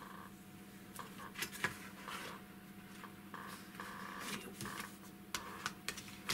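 Card stock being scored along a metal ruler for folding: several short scraping strokes of the tool on the card, with a few light clicks and taps, over a faint steady hum.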